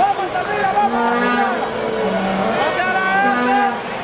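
Ballpark crowd noise with several long, held notes from the stands layered over it, overlapping at different pitches from about a second in.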